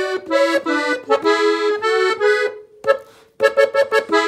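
Farinelli piano accordion playing a short ornamental fill (adorno) of a norteño melody, two notes at a time. The phrase breaks off near three seconds, a single quick note sounds, and then the playing starts again.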